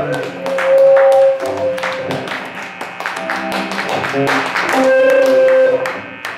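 Instrumental rock band played live: electric guitar, bass guitar and drum kit, with busy drum and cymbal hits. Two long held notes ring out, one early on and one near the end.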